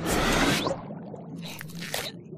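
Cartoon sound effect: a loud, wet, squelching rush that starts at once and fades within the first second, followed by two short clicks near the end.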